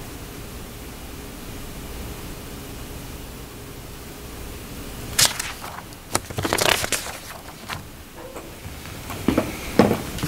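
Steady low room hum. About five seconds in there is a sharp click, followed by irregular rustling of papers being handled on the table near the microphone, with a second burst of rustling near the end.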